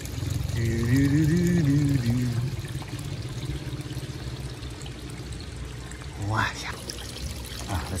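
Water pouring and trickling steadily in a pump-fed backyard fish pond, the flow from a 6,000-litre-per-hour pump spilling through overflow outlets. A person's voice, rising and falling in pitch, comes in for about two seconds near the start and briefly again past six seconds.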